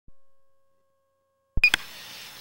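Near silence, then about one and a half seconds in a sudden click and thump with a short high electronic beep, followed by a low steady hiss.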